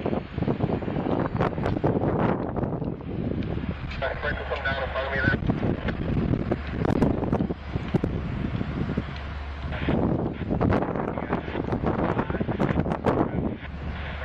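Wind buffeting the microphone in gusts over the low, steady rumble of a diesel locomotive's engine as it moves slowly along the track.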